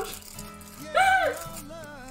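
Stiff paper craft sheets rustling and rattling as they are handled and flipped, over quiet background music, with a short wordless vocal sound about a second in.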